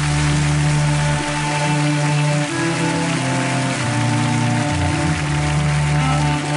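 Slow performance music of sustained low chords, with a steady rain-like hiss over it.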